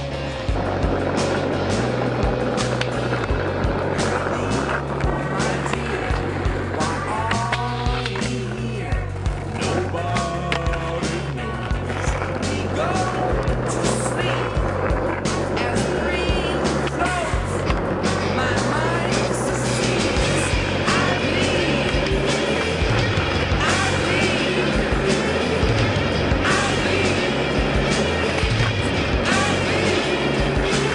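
Skateboard rolling on asphalt with sharp knocks of the board, over music with a repeating bass line and singing.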